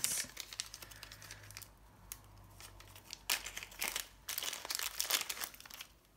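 Small clear plastic bag crinkling and crackling as it is handled and opened and a glitter pot is taken out. The crackling is dense at the start, eases off, then picks up again through the second half.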